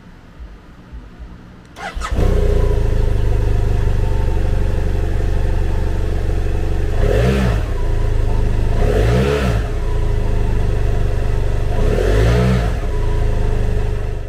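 2010 BMW F650GS's liquid-cooled 798cc parallel-twin engine starting after a brief crank about two seconds in, then idling loudly and steadily, with three quick throttle blips a couple of seconds apart, each rising and falling back to idle.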